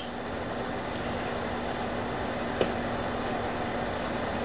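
Steady mechanical hum with a low tone, like a kitchen fan or appliance running, with one light click about two and a half seconds in as the serving spoon touches the pot.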